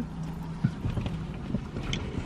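Steady low hum inside a car cabin, with a few faint knocks and a brief rustle as a glass liquor bottle is handled, passed over and lifted to drink.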